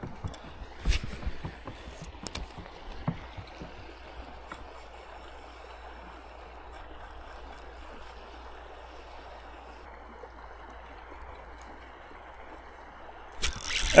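Steady rush of water flowing through a levee gap, with a few sharp clicks and knocks in the first three seconds.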